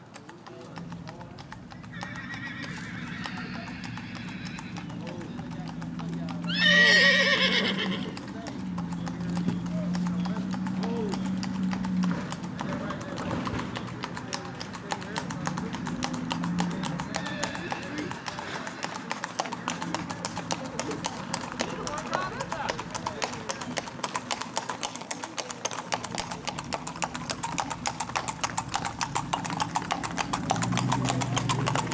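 Shod hooves of a gaited Tennessee Walking Horse stallion on asphalt: a quick, even clip-clop that grows sharper and louder through the second half. About seven seconds in comes a loud, high call lasting about a second and a half.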